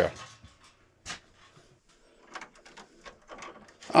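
Steel electrical panel cover handled and set aside: a single sharp knock about a second in, then faint light clicks and rattles near the end.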